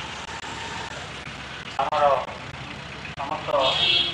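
A man speaking short phrases into a handheld microphone, about two seconds in and again near the end, over a steady low background rumble.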